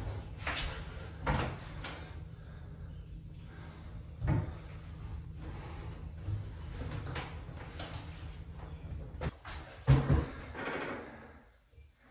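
A double-sink vanity countertop knocking and scraping against its cabinet as it is lifted and tipped up on edge. There are a few sharp knocks in the first two seconds, another about four seconds in, and a cluster near the end, with quieter shuffling between.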